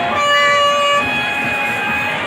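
A horn sounding one steady note for about a second, then fading to a fainter held tone, over constant background noise.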